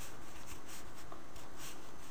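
Steady hiss of a desk microphone's room noise, with faint soft scratchy brushing sounds and no clicks.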